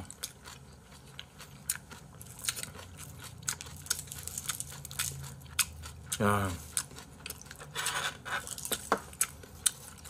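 Close-miked chewing and biting of raw yellowtail wrapped in white kimchi: many small wet clicks and crunches. A short hum of approval comes about six seconds in.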